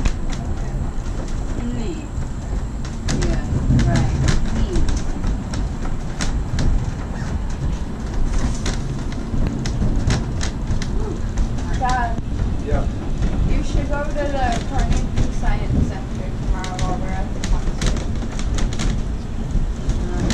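Duquesne Incline funicular car running down its cable-hauled track, heard from inside the car: a steady low rumble with frequent rattles and clicks. Voices come in briefly past the middle.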